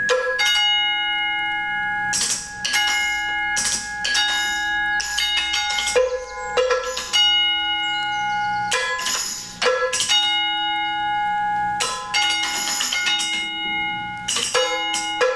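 Solo multi-percussion played with drumsticks: struck metal ringing with several held bell-like tones, cut through by sharp, irregular stick strikes.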